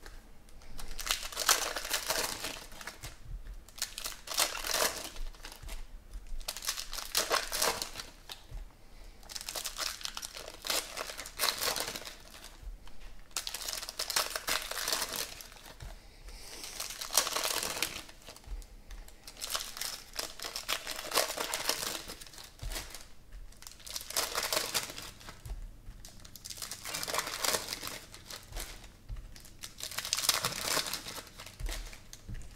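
Foil trading-card packs of 2017 Panini Prizm football being torn open and the wrappers crinkled, in repeated bursts of crackling every couple of seconds with short pauses between.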